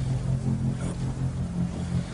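A car running, heard from inside the cabin: a steady low hum.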